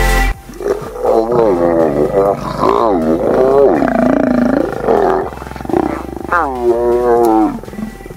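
Lions growling during mating: a series of drawn-out, pitched calls that rise and fall, with one long call in the middle and a last one near the end.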